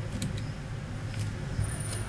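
A few light clicks of a small screwdriver working a screw in a laptop chassis, over a steady low background rumble.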